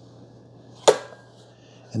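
A single sharp click about halfway through: the hinged plastic lid of a Eufy RoboVac 25C robot vacuum's dustbin snapping shut.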